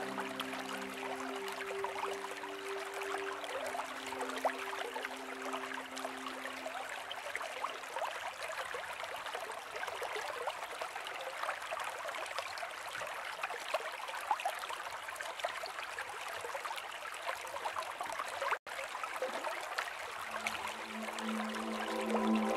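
Running water of a small stream trickling steadily, a nature recording. Sustained music notes fade out over the first few seconds, the sound cuts out for an instant about three-quarters of the way through, and new sustained music notes come in near the end.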